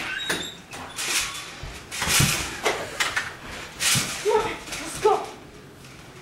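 Indistinct voices without clear words, mixed with several short noisy bursts.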